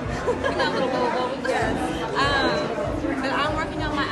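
Speech: a woman talking, with more voices chattering in the background.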